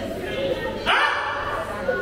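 A man's voice speaking loudly into a handheld microphone over loudspeakers, with a sharp, rising shouted exclamation about a second in.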